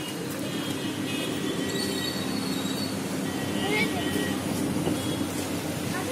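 Lamborghini Huracán's V10 engine idling steadily.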